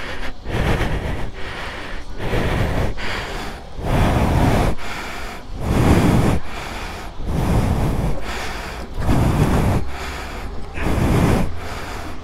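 A person breathing heavily close to the microphone, in regular noisy puffs every second or two.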